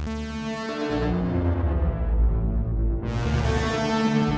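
Synthesizer lead melody (a Minimoog 'city lead' preset) run through a Microcosm effects pedal, playing sustained pitched notes with shifting effects. A low bass swells in about a second in, and a bright high wash rises in suddenly near the end.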